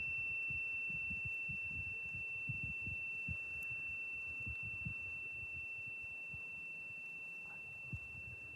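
A steady, unwavering high-pitched tone, with irregular low thumps and rumbling beneath it.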